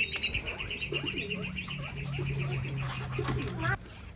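A bird's high trill runs steadily, with a low steady hum joining about a second in; both cut off suddenly shortly before the end.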